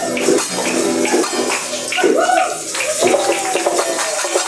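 Strummed acoustic guitar with hand-held maracas shaken in rhythm, the shaking strongest in the first half. In the second half voices rise and fall over it.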